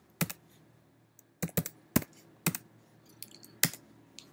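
Computer keyboard keys clicking as a command line is typed and edited: about half a dozen separate keystrokes at an uneven pace, with the last one near the end as the command is entered.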